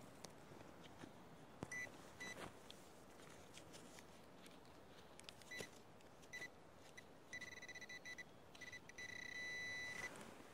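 A metal-detecting pinpointer beeping faintly in a thin high tone: a few short beeps, then a quick run of beeps, then a steady tone near the end as it closes on a metal target in the dug soil. Faint scraping and rustling of hands in the earth.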